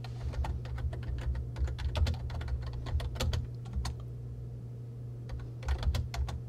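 Typing on a computer keyboard: a quick run of keystrokes for about four seconds, a short pause, then a few more keys struck near the end. A steady low hum runs underneath.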